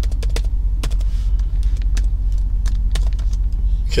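Computer keyboard keys clicking in short, irregular keystrokes as a word is typed, over a steady, loud low hum.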